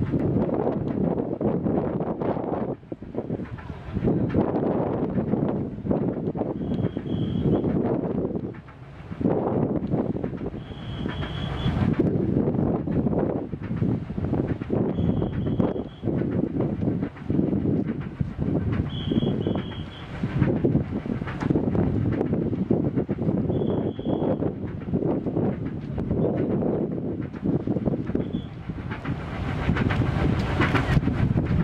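Gusting wind buffeting the microphone: a heavy, uneven rumble that swells and dips every second or two. A faint short high tone recurs about every four seconds.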